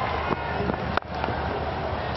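Steady background noise of a cricket ground during a broadcast, with one sharp crack about halfway through.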